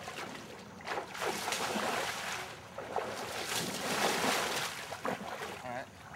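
Splashing and sloshing of legs wading fast through knee-deep swamp water, in a couple of long surges.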